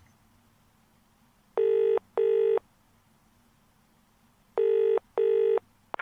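Telephone ringing tone in the caller's earpiece, the British double-ring 'brr-brr' cadence: two pairs of short steady rings, about three seconds apart, as the call waits to be answered.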